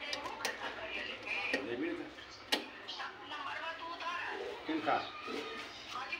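Faint voices of people talking in the background, broken by a few sharp clicks, the clearest about two and a half seconds in.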